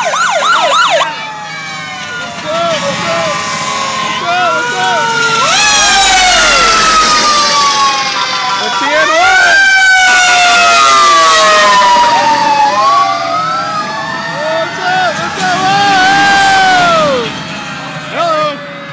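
Several emergency-vehicle sirens sounding at once from a passing police car and fire engines. A fast yelp cuts off about a second in, and rising-and-falling wails then run over long tones that slowly sink in pitch.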